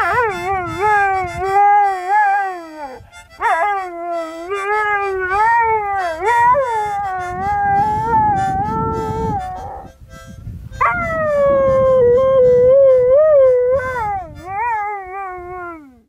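A dog howling: three long, wavering howls, with short breaks about three seconds in and about ten seconds in, the last one starting high and sliding down in pitch.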